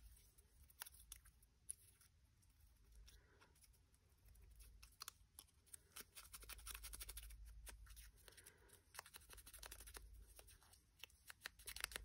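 Near silence, with faint soft rubbing and a few small taps: the foam pad of an ink blending tool being dabbed and rubbed along the edge of a small paper scrap.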